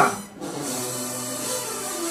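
Marching band music with sustained held notes under crowd noise, after a brief drop-out about a third of a second in.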